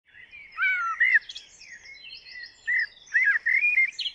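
Birdsong: quick chirping and warbling phrases that rise and fall in pitch, in loud bursts with quieter chirps between.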